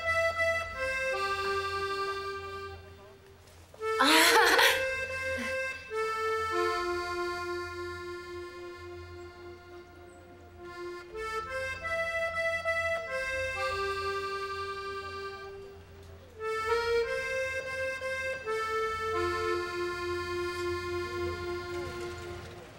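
Background music on an accordion: slow phrases of long held notes, each phrase fading before the next begins. A brief loud noise cuts across it about four seconds in.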